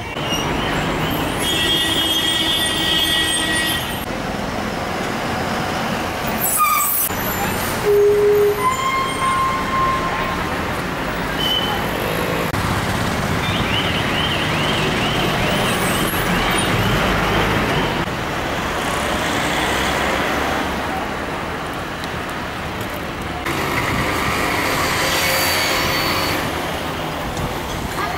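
City road traffic noise, with vehicle horns sounding several times.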